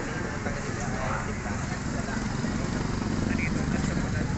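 Street ambience: a steady low rumble of traffic with indistinct voices of people around.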